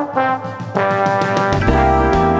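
Trombone playing a melody in an instrumental track, in sustained notes; a deep bass line comes in about one and a half seconds in.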